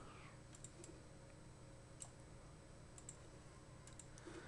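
Near silence: faint room tone with about seven scattered faint, sharp clicks.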